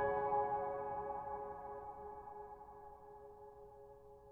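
Solo piano: a chord held with no new notes, ringing on and slowly fading away.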